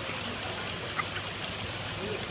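Steady trickling and running of water in an ornamental fish pond.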